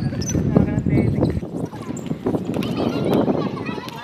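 Basketball thudding on a concrete outdoor court in a series of hollow knocks, with players' voices calling in the background. Wind rumbles on the microphone for the first second and a half.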